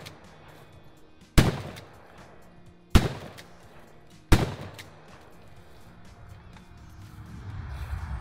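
Three 12-gauge shotgun shots, fired about a second and a half apart during a rapid shooting drill, each with a short echoing tail.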